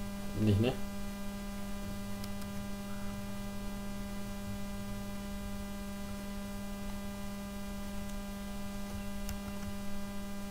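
Steady electrical mains hum from the recording setup, with a faint click near the end.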